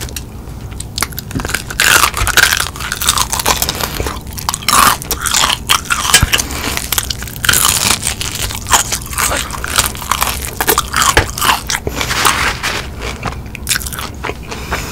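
Close-miked biting and chewing of a crispy fried chicken wing coated in cheese sauce: dense, irregular crunching and crackling of the fried breading, starting about a second in.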